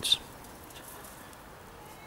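Faint steady background hiss with no distinct sounds. A man's word trails off at the very start.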